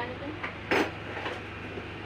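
Low steady hum with faint voices, and one short sharp clink of metal parts being handled on an industrial sewing machine about three-quarters of a second in.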